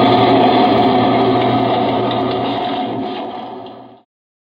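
A loud, buzzing sustained chord or drone from the live band's sound, starting suddenly, fading away over about four seconds and then cut off abruptly.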